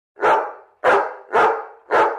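American Cocker Spaniel barking four times, about half a second apart, the last one near the end.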